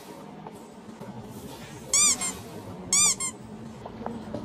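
A high squeak sound effect played twice, about a second apart. Each is a short squeak that rises and falls in pitch, followed at once by a quicker, fainter one.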